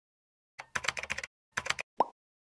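Rapid computer-keyboard typing clicks in two bursts, a longer one then a shorter one. A sharp hit comes right at the end as the channel logo appears.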